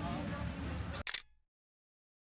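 Street ambience with voices, cut about a second in by a camera-shutter click sound effect, after which the sound drops out to silence.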